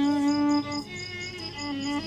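Solo violin playing a rural Iraqi Mohammadawi melody: a long held note, then a softer phrase about a second in. Crickets chirp steadily in the background with a rapid, even pulse.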